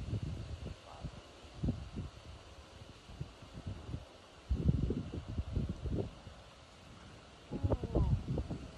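Wind gusting over the microphone in irregular low rumbles, strongest a little past halfway and again near the end.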